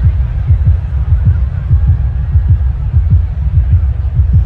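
Deep bass from a stadium sound system, pulsing about four times a second and booming into the phone's microphone, with little else above it.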